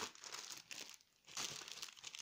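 Clear plastic packets of purple foil garland crinkling as they are handled, in short faint bursts: one at the start and more in the second half.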